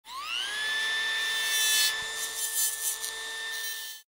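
A small high-speed motor spins up with a rising whine, then runs at a steady high pitch. A rougher, uneven noise joins it from about halfway through, and it cuts off abruptly at the end.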